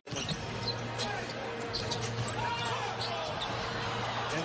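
A basketball dribbled on a hardwood court, a run of repeated bounces.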